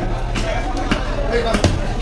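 A large knife chopping through fish flesh onto a wooden block: a few sharp thuds, the heaviest about one and a half seconds in.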